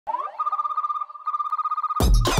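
Electronic warbling tone: a quick upward glide into a steady high note that pulses rapidly, dipping briefly about a second in.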